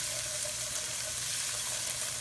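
Chopped onion, garlic and bell pepper sizzling steadily in hot oil in a pan.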